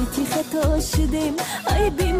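A song playing: a wavering sung melody over a steady deep beat, about two beats a second.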